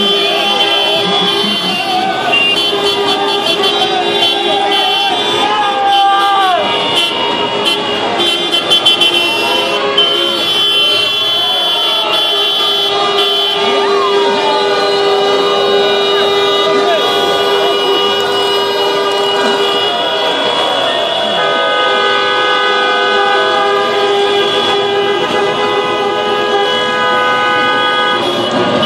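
Several car horns honking in celebration, long overlapping steady blasts held for seconds at a time, with a crowd shouting over them.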